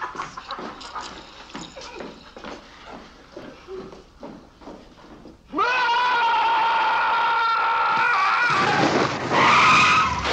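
A man screaming at the top of his voice: after a few seconds of quieter scattered noise, the scream starts suddenly about halfway through and is held at one steady pitch for about three seconds, then turns rougher and louder near the end.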